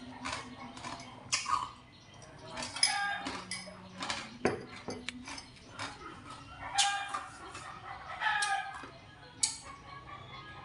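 Chickens calling repeatedly, clucking with a rooster crowing. There is a single sharp knock about four and a half seconds in.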